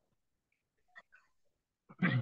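Near silence: room tone, with a couple of faint, brief sounds about a second in.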